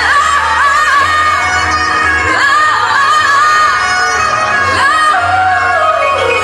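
A singer's voice holding long notes that slide between pitches, over a pop backing track with a steady bass line. Near the end the melody glides downward.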